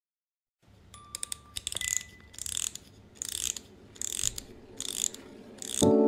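A regular run of short, crisp, ratchet-like clicking bursts, about one every 0.8 seconds, with two brief beeps near the start. Just before the end, music with mallet percussion such as glockenspiel or marimba comes in loudly.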